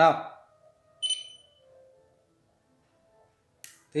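A short, high electronic chime about a second in, fading within half a second: the button-press sound of an Android control app as one of its on-screen switches is tapped.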